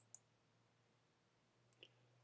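Near silence, broken by a quick pair of clicks right at the start as a computer mouse button is pressed and released, then a couple of faint ticks near the end.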